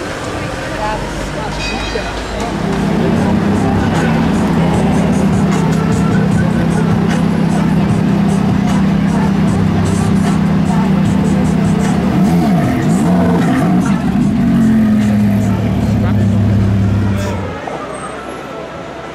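Ferrari F430 Spider's V8 engine running at a steady, fairly high pitch, with a quick wobble in revs about two-thirds of the way through, then dropping lower before cutting off abruptly near the end.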